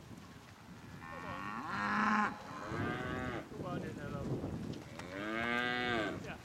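Simmental-Angus feeder calves mooing, several calls overlapping. The loudest come about two seconds in and again near the end, where one call rises and then falls in pitch.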